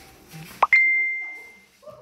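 A single bell ding: a quick sharp swish, then one clear high ringing tone that fades out over about a second, marking the end of the count on the hold.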